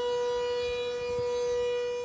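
Warning siren sounding one long, steady tone at a constant pitch, of the kind sounded for an evacuation.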